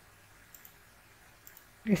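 Two faint computer mouse clicks about a second apart, each a quick press-and-release, over low hiss. A voice starts speaking just before the end.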